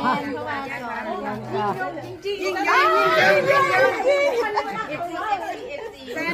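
Several people talking at once, overlapping chatter of a small group, busiest about halfway through.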